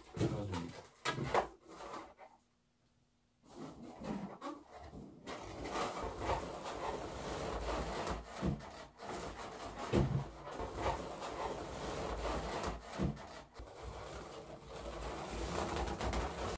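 Inflated latex balloons rubbing and squeaking against each other and the balloon ring as they are handled and pressed into a cluster. There is a brief hush about two seconds in, then continuous rubbing with a few louder squeaks.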